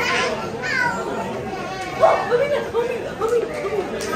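Children's voices as they play, with other people chattering around them; several short, high-pitched calls come about two seconds in.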